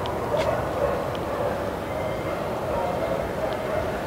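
Steady outdoor background noise with faint, distant voices.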